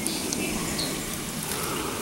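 Soft steady rustling with a few faint crackles, from a hand rummaging through a mesh scoop net full of live crawdads lying on dry reeds.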